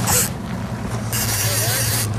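Boat motor running with a steady low hum. A brief hiss comes right at the start, and a steady hiss joins about a second in.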